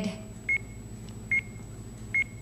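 Game-show countdown clock beeping as the seconds run down: short, high electronic beeps at a steady pace of about one a second, heard twice.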